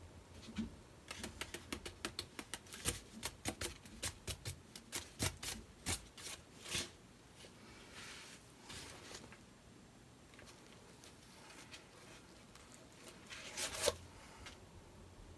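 A hand-turned canvas spinner clicking and rattling as it spins, a fast irregular run of clicks that thins out and stops as the spin dies down, then a short cluster of clicks near the end as it is set spinning again.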